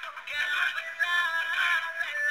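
Music playing for the dance: a song whose melody line steps up and down. It sounds thin, with almost no bass.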